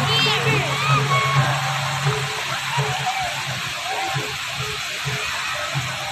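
Water jets of a large illuminated dancing fountain spraying, a steady hiss of falling water, with music playing and people's voices mixed in.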